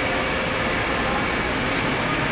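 Steady, even whooshing noise of running machine fans, with a faint thin whine for about the first second and a half.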